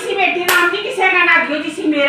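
A woman talking in Haryanvi, with one sharp clap of the hands about half a second in.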